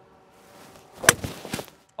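A hybrid golf club swung down and striking a golf ball off the fairway: a single sharp crack about a second in, the loudest sound, after a brief rising swish. A clean, solid strike.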